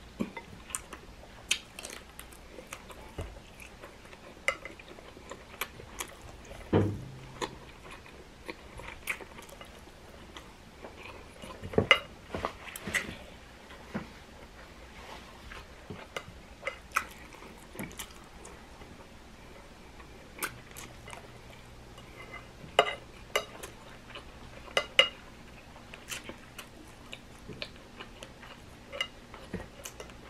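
Close-miked eating: chewing with scattered sharp clicks of a metal fork against a glass bowl and plate, a few louder clinks standing out.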